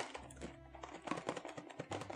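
Light, irregular clicking and rattling of a small vinyl figure knocking inside a cardboard blind box as the box is tilted and shaken.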